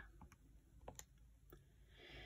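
Faint clicks of a TI-84 Plus graphing calculator's keys being pressed, about four light presses spread over two seconds.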